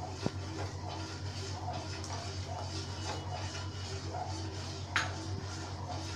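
A metal spoon stirring milk in a stainless-steel pan, kept moving so the added cornflour doesn't form lumps, with two sharp clinks of spoon on pan, one just after the start and one near the end. A steady low hum runs underneath.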